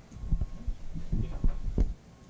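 Microphone handling noise: a quick run of about six dull, low thumps and bumps as a panel microphone is picked up and moved.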